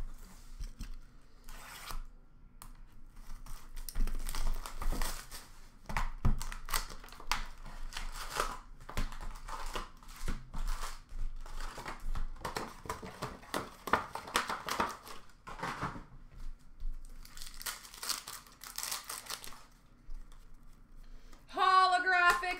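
Hockey card pack wrappers being torn open and crinkled by hand, in crackling bursts that start a few seconds in and run on in two long stretches with a short lull between.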